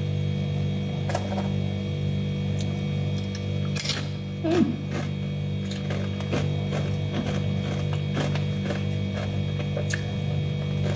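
Steady low electrical hum throughout, with scattered light clicks and crackles as tortilla chips and toppings are picked up by hand; a slightly louder cluster of clicks comes about four seconds in.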